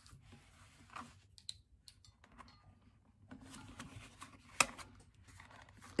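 Faint handling noises from a large plastic jug of vegetable glycerin and a plastic measuring spoon being picked up and moved: scattered small clicks and rustles, with one sharp click about four and a half seconds in.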